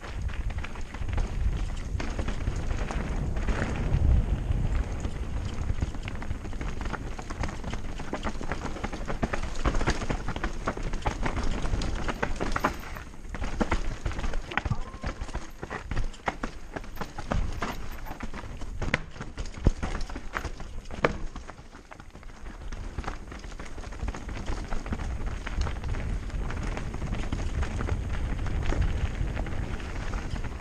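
Mountain bike riding fast down rocky singletrack: a dense low rumble with tyres crunching over stones and the bike rattling in quick, irregular knocks.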